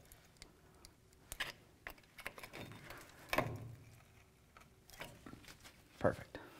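Faint, scattered metallic clicks and light knocks of a pry bar levering between a front brake caliper and its rotor to push the caliper pistons back. The loudest knock comes about three and a half seconds in.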